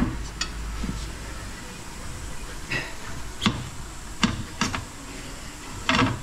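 Scattered short metallic clinks and knocks, about six, from tools and a bar working against a motorcycle's spoked rear wheel and frame as the wheel is levered into place. A low rumble runs under the first second or so.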